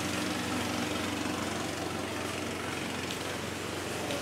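A motor running steadily, a constant low hum that does not change in pitch or level.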